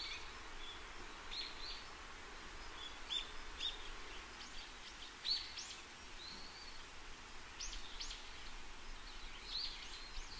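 Faint birdsong: scattered short chirps and whistles, a dozen or so, some gliding up and down, over a steady hiss.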